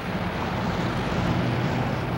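A car towing a travel trailer drives by on a highway: steady engine hum and tyre and road noise, growing a little louder as it approaches.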